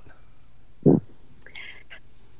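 A person's voice close to a microphone during a pause in talk: one short low vocal sound just before a second in, then faint breathy whispering toward the end.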